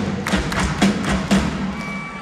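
Live rock band playing an instrumental passage of a pop-country song: a steady drum beat with electric guitars, and no vocal line.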